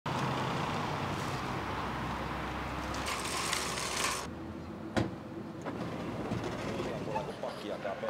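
Outdoor traffic ambience with a vehicle engine running steadily, which cuts off about four seconds in to quieter indoor room tone. A single sharp click follows about a second later, and faint voices begin near the end.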